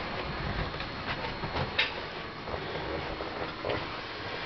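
Movement and handling noise: scattered light knocks and creaks over a low steady rumble, with one sharper click about two seconds in.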